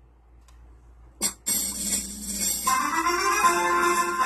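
Electronic keyboard music that starts about a second and a half in, just after a short click, with a melody of steady notes coming in more strongly a little later.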